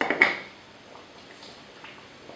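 Two sharp knocks of a pestle against a mortar, a fraction of a second apart, right at the start, followed by faint room sound.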